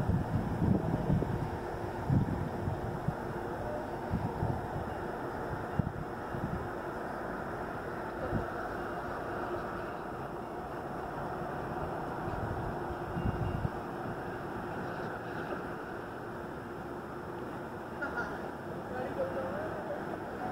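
Wind buffeting the microphone in uneven gusts through the first dozen or so seconds, over a steady outdoor rumble from a distant commuter train and traffic.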